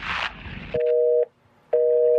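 Telephone busy signal: a steady two-tone beep sounding for about half a second once a second, starting just under a second in.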